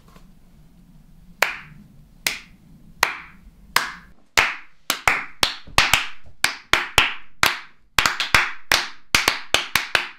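Hand clapping: separate sharp claps that begin about a second and a half in, slowly at first, then come quicker from about halfway through.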